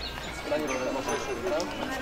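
Voices of a walking procession crowd over shuffling footsteps on the road.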